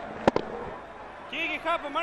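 Cricket bat striking the ball: a sharp crack about a third of a second in, followed at once by a second, fainter knock.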